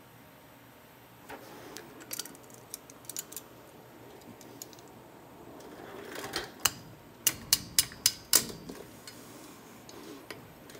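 Steel locking pliers clicking and clinking against a torch-heated hub stud as they are clamped on to turn it out: scattered light ticks, then about six sharp metallic clicks in quick succession past the middle. A faint steady hiss from the lit oxyacetylene torch lies under it.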